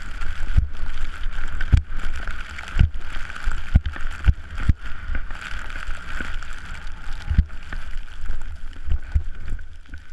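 Rushing wind noise on a skier's point-of-view camera microphone while skiing down through fresh snow, with a steady hiss and irregular low thumps from the ride.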